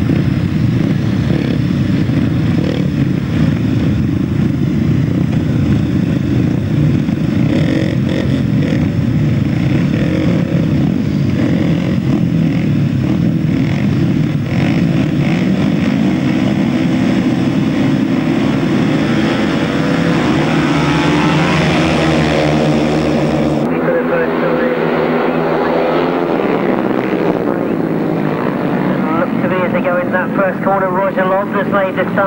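A pack of 500cc single-cylinder grasstrack solo motorcycles revving on the start line. The engines rise in pitch through the later part, and the bikes leave the start and race off into the first turn near the end.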